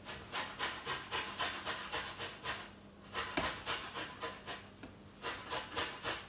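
A hand grater scraping in rapid, even strokes, about five a second, with a short pause about halfway through: an orange being zested on the grater.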